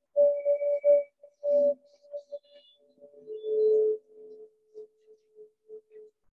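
Ambient meditation background music: a sustained pure tone that steps down to a lower pitch about three seconds in, coming through in short, choppy fragments.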